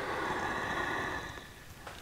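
A man's long breath out, a soft hiss that fades away about one and a half seconds in.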